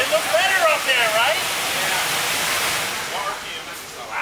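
Excited wordless whoops and shouts from people in the first second and a half, over a loud, steady rushing noise that fades away over the last second or so.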